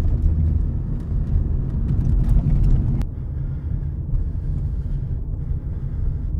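Steady low rumble of road and engine noise heard inside a moving car's cabin. There is a brief click about three seconds in, after which the sound turns a little quieter and duller.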